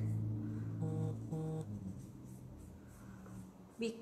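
A large soft brush sweeping over fondant, a faint swishing as pink colour is painted across the cake's surface. About a second in come two short hummed notes.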